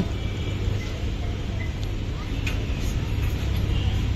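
Outdoor street ambience: a steady low rumble of road traffic, with a couple of faint clicks about two and a half to three seconds in.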